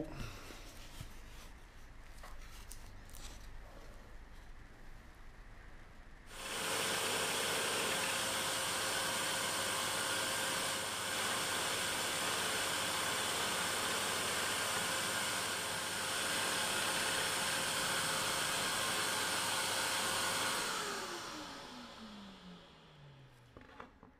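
Hegner scroll saw cutting a bevel in thin wood with a dust extractor running through its hose: a loud, steady hiss switches on suddenly about six seconds in, holds, then the motor winds down near the end, its hum falling in pitch. Before it starts, light knocks of the wood being handled.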